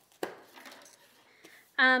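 A single sharp tap as a plastic-bagged package is set down on a wooden desk, followed by faint crinkling of the plastic packaging as it is handled. A short spoken 'um' comes near the end.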